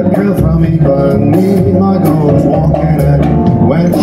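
Live jazz band playing, with melodic lines over a steady accompaniment.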